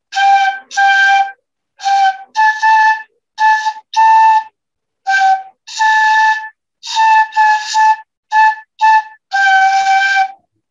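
A beginner's transverse flute played as a simple tune of short, separate notes with brief pauses between them. The pitch stays within a narrow range, and the tone is breathy.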